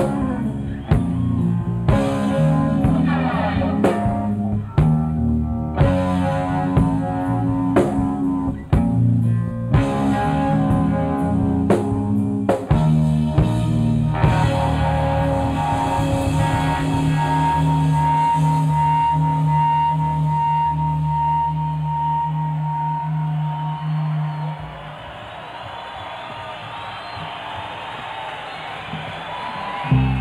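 Live rock power trio of electric guitar, bass and drum kit playing, with sharp drum hits under changing guitar chords. About halfway through, the band holds one long sustained chord with a high ringing guitar note for several seconds. Near the end it falls away to a quieter wash of sound.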